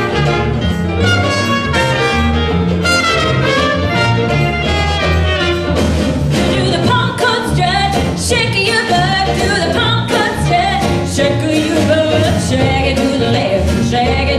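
Traditional New Orleans jazz band playing an up-tempo strut: clarinet and trumpet over drums and a steady bass line. From about six seconds in, a voice sings a chorus over the band.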